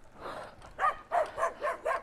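A dog barking in a fast run of short, high barks, about four or five a second, from about a second in.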